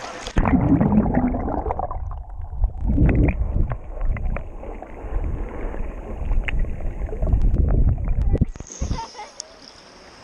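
Muffled underwater sound of river water picked up by a submerged action camera: loud low rumbling and gurgling with a few sharp clicks. About a second and a half before the end the camera breaks the surface and the open-air river sound returns.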